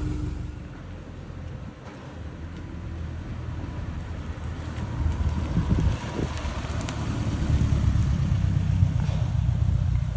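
A Volkswagen Split Screen Kombi with a Subaru EJ25 flat-four engine conversion driving off, its engine rumble fading briefly about a second in, then building louder as it pulls away.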